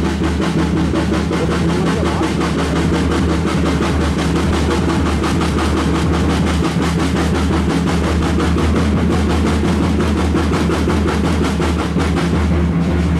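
Music of rapid, even drum strokes like a drum roll, over a steady low drone, accompanying a flag hoisting.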